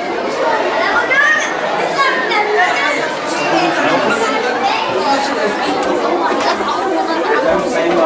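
Many voices talking at once in a room, overlapping chatter with no single speaker standing out.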